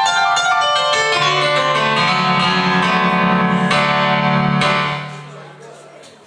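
Electronic keyboard on a piano sound playing a rock-and-roll piano intro: quick runs and rapidly repeated notes over a held low note. The last chord dies away about five seconds in.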